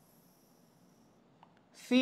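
Faint high scratch of a stylus writing on an interactive display panel for about the first second, with a small tap a little later; a man's voice says a letter at the very end.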